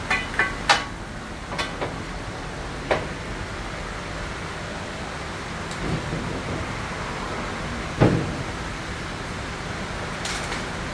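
Scattered metal clicks and knocks from hand work on a car's engine bay, with one heavier thump about eight seconds in, over a steady low background noise.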